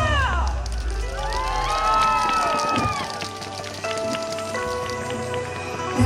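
Recorded yosakoi dance music over loudspeakers at a break between sections. The bass and beat drop out about half a second in, gliding tones swoop up and down for a couple of seconds, then held notes sound until the full music with bass comes back in at the end.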